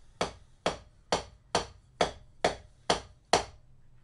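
Wooden drumsticks striking a drum practice pad eight times at an even, unhurried pace of about two strokes a second, played as double strokes: two with the right hand, then two with the left (RRLL RRLL).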